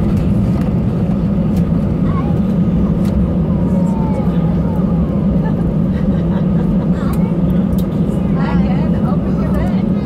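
Cabin noise of an Airbus A319 taxiing: a steady, loud low drone from the jet engines at idle thrust and the cabin air. Faint voices are heard under it.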